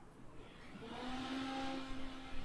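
A small motor running steadily: a low hum with a few higher steady tones over a rushing noise that swells up about half a second in.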